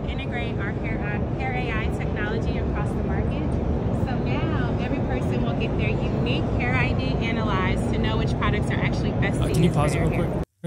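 A woman talking over the steady din of a crowded exhibition hall: a dense wash of crowd noise with a low rumble under her voice.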